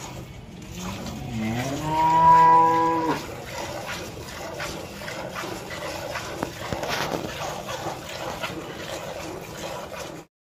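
A black-and-white dairy cow gives one long moo about a second in, rising at first and then held for about two seconds before stopping sharply. Afterwards come soft irregular squirts of milk into a steel pail as the cow is milked by hand.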